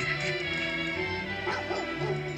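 Music playing from a computer's speakers, picked up off the screen. About one and a half seconds in, a short wavering cry rises over it.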